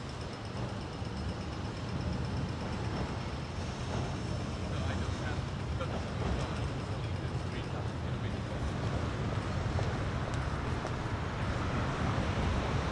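City street ambience: road traffic running steadily by, with voices of people passing on the footpath.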